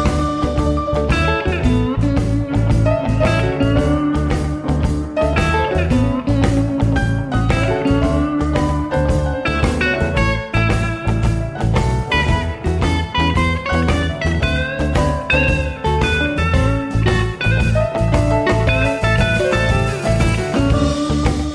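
Blues band recording, instrumental passage: guitar playing lead lines over a steady bass and drum groove, with no singing.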